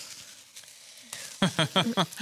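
A lit handheld sparkler fizzing faintly, with light crackles. A short burst of voice comes near the end.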